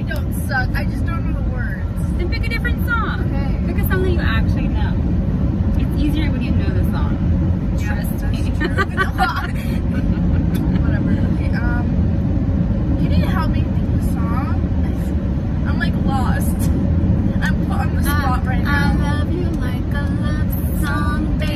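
Steady low rumble of road and engine noise inside a moving car's cabin, with women laughing and making scattered voice sounds over it.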